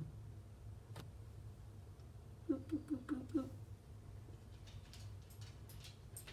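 A woman's short, soft laugh of five quick notes about halfway through, over a low steady hum. Faint scratchy clicks follow near the end.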